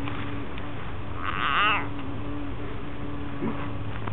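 A frog's distress scream, given while it is gripped in a ribbon snake's jaws: one loud, wavering, cat-like cry of about half a second, followed near the end by a fainter short cry.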